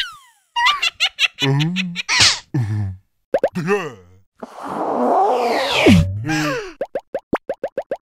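Cartoon characters' wordless, squeaky vocalizing mixed with comic sound effects: a stretch of noise in the middle, then a quick run of about nine short pops near the end.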